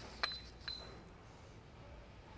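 Two light metallic clinks, about half a second apart, each with a brief high ring, as the metal rear-main-seal driver tool is set down on the metal workbench.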